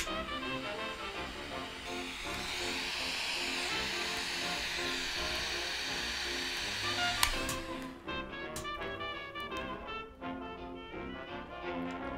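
Butane torch lighter clicked on and hissing steadily while it toasts and lights a cigar's foot, the hiss cutting off with a click about seven seconds in. Background music plays throughout.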